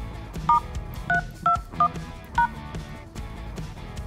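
Smartphone keypad DTMF tones: five short two-tone beeps in about two seconds as the code *321# is dialled, here a log-out code for a call-centre system. They sound over background music with guitar.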